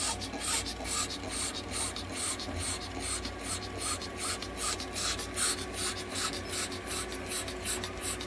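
A Chihuahua panting rapidly and evenly, about two to three breaths a second, while breathing nebulized mist inside a plastic inhalation hood, over a steady low machine hum.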